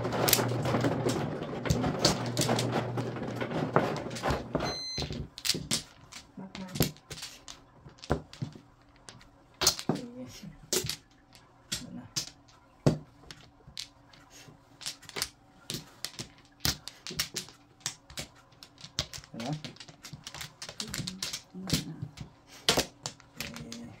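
Mahjong tiles clacking against the table and each other as they are drawn and discarded, sharp single clicks at uneven intervals. The first few seconds hold a denser, continuous clatter of tiles.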